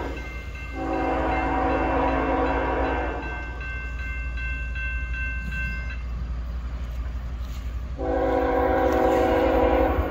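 Air horn of an approaching CSX freight locomotive sounding long blasts: one starting about a second in and held for a little over two seconds, a second starting near the end, with a steady low rumble underneath.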